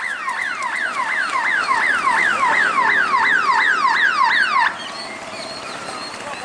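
An electronic siren sounding a rapid falling yelp, about three downward sweeps a second, which cuts off suddenly about three-quarters of the way through.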